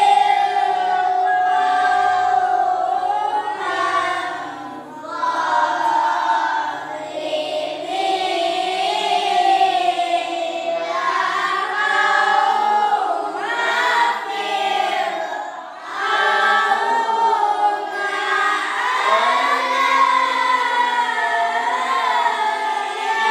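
A group of children and their teacher reciting the Qur'an together in unison, in melodic tilawah style, with long held notes and two short pauses.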